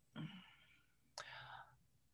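Near silence broken by two faint breathy sounds from a woman pausing mid-sentence, one just after the start and one about a second in.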